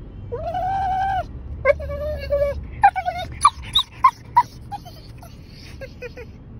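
Pit bull whining and crying: two long drawn-out whines, then a quick run of short, higher-pitched squeaks and yelps, the sound of a dog impatient to get out of the car. A low steady hum runs underneath.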